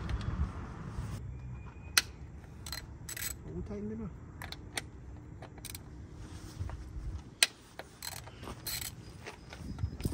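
Hand ratchet clicking in short, irregular strokes as the valve cover bolts are tightened on a Honda K24 engine, with metal tool clinks, over a low background rumble that fades about seven seconds in.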